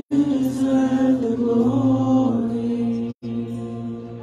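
Slow worship singing by a man and a woman leading a church congregation, with long held notes over a steady musical backing. The sound cuts out completely for a split second twice: at the start and about three seconds in.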